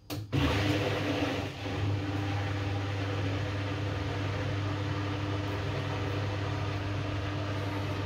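Kogan 9 kg front-loading washing machine running on a quick-wash cycle: a steady hum with a rushing hiss, starting suddenly just after the start and then holding level.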